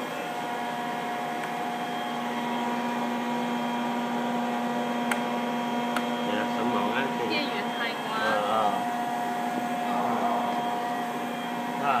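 Sandblasting cabinet machinery running with a steady hum and several steady tones. The lowest tone stops about ten seconds in.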